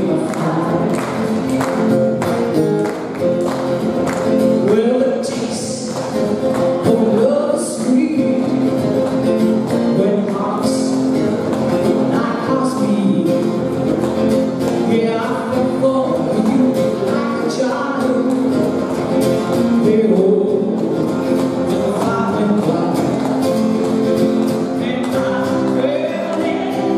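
A woman singing live to her own strummed acoustic guitar, voice and guitar continuous throughout.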